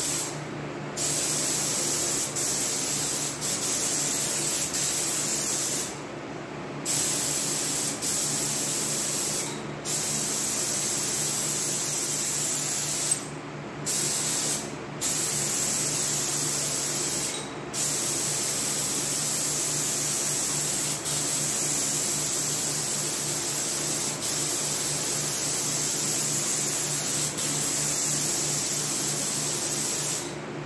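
Gravity-feed spray gun hissing as it sprays base coat, the air cutting off briefly about six times as the trigger is let go between passes. A steady low hum runs underneath throughout.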